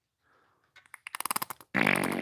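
Plastic squeeze bottle of white dye sputtering as it is squeezed: a rapid run of small pops from the nozzle about a second in, then a longer, louder splutter as air and dye spurt out together, the dye just starting to flow.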